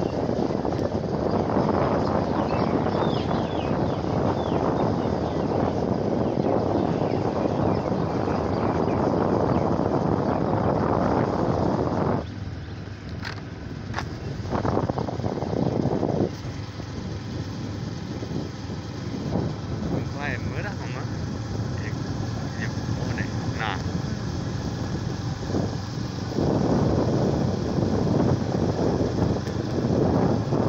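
Wind rushing over the microphone with the running of a small motorbike on the move. The noise drops back for a stretch in the middle and comes back strong near the end.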